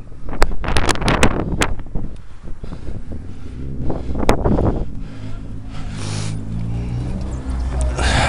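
Wind buffeting the microphone of a camera on a moving bicycle, with a few sharp clicks in the first two seconds. From about halfway, a motor vehicle's engine runs steadily underneath.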